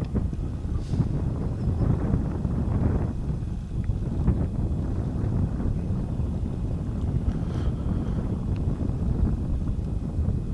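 A light breeze buffeting the microphone: an uneven low rumble of wind noise.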